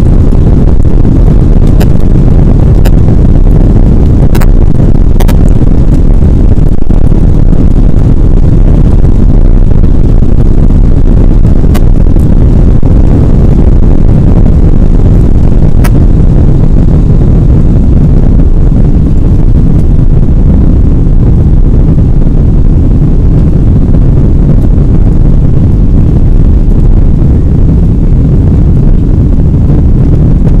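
Airliner jet engines at takeoff thrust heard from inside the passenger cabin: a loud, steady low roar through the takeoff roll and lift-off, with a few sharp clicks in the first half.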